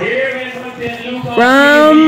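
A ring announcer's voice calling the result, ending in one long, loud call that rises in pitch about halfway through.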